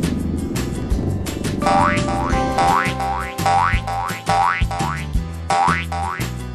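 Upbeat background music with a cartoon sound effect laid over it: from about a second and a half in, short rising whistles repeat about three times a second.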